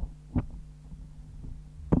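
Steady low electrical hum from the PA with about three soft, dull thumps from a handheld microphone being handled.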